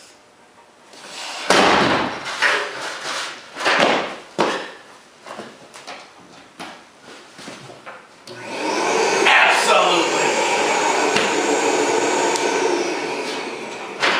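A Bio3Blaster ozone machine dropped from about nine feet hits a rug-covered concrete floor with a loud crash about a second and a half in, followed by a few more knocks. About eight seconds in, its fan starts and runs with a steady whir: the machine still works after the drop.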